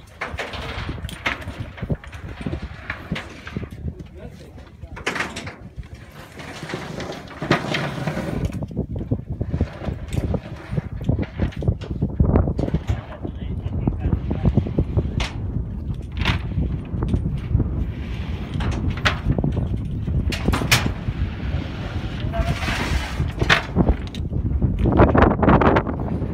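Coils of seismic geophone cable being handled and loaded onto a work truck: scattered clanks and knocks over a steady low rumble that gets louder about a quarter of the way in, with workers' voices in the background.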